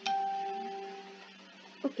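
A single electronic chime, one clear bell-like tone that starts suddenly and fades out over about a second and a half, marking a change of presentation slide.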